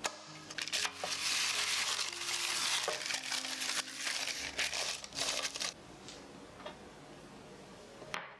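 Baking paper crinkling and rustling as it is pressed into a springform cake pan to line it, loudest for a few seconds and then dying down about two thirds of the way through.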